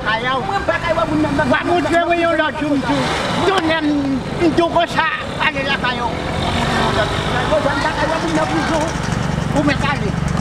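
People talking back and forth, with a vehicle engine running steadily underneath that grows more noticeable in the second half.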